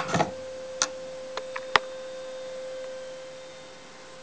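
A few sharp clicks and knocks from a Victor Type II acoustic phonograph after the record has ended, as the brake lever beside the turntable is worked and the record comes to a stop. The clicks come about once a second in the first two seconds, over a faint steady hum.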